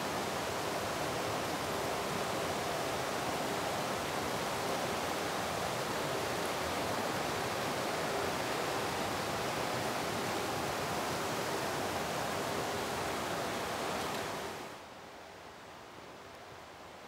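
Shallow mountain stream rushing over rocks and small cascades, a steady wash of water sound. Near the end it falls away quickly to a much fainter background.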